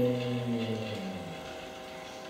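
Tin humming top spinning down: a drone of several tones that slides slowly lower and fades out about a second in.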